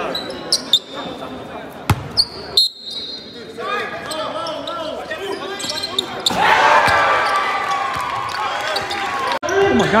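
Basketball game in a gym: a few sharp ball bounces and high sneaker squeaks on the hardwood in the first three seconds. About six seconds in, as a player dunks, many voices start shouting and cheering and keep on to the end.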